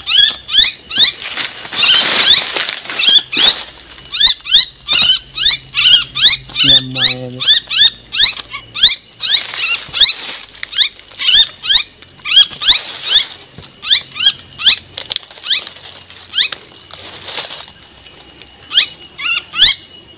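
Loud, sharp, downward-sweeping calls of a small bird, repeated about twice a second, over a steady high buzz of insects.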